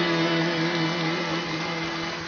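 Live sevdalinka band holding one long sustained note, steady in pitch, over a rushing noise, easing off near the end.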